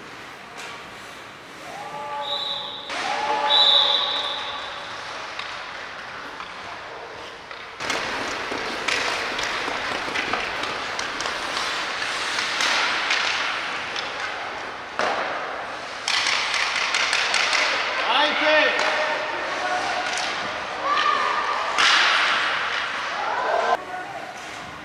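Youth ice hockey play in an indoor rink: skate blades scraping the ice, sharp clacks of sticks and puck, and players' shouts, all echoing in the large hall.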